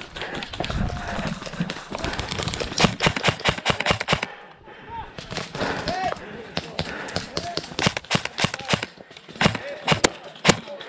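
Airsoft guns firing in quick strings of sharp snapping shots. A dense burst comes about three seconds in, and scattered shots follow in the second half. Running footsteps and rustling come at the start.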